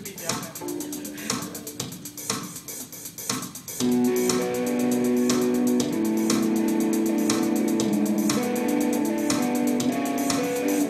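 Electric guitar played through a small amp over a programmed rock drum beat. For the first few seconds the guitar is quiet under the steady drum pattern, then about four seconds in it comes in much louder with sustained notes and chords.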